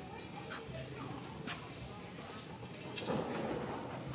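Faint background voices, with a few sharp clicks and a short, louder rustle about three seconds in.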